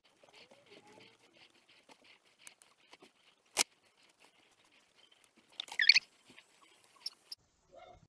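Paintbrush dabbing paint dots onto paper: faint, irregular light taps. A single sharp click comes about three and a half seconds in, and a short high squeak about six seconds in.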